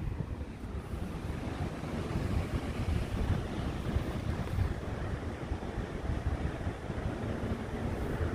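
Wind buffeting the microphone in a steady, uneven rumble, with ocean surf washing behind it.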